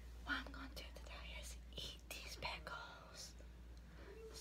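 A woman whispering close to the microphone in short breathy phrases.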